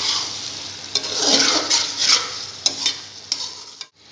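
A spoon stirring and scraping chicken keema and potatoes around a metal pot, with the oil sizzling under it. The stirring fades and breaks off suddenly just before the end.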